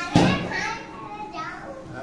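A young child calling out loudly just after the start, high-pitched, followed by a couple of softer voice sounds.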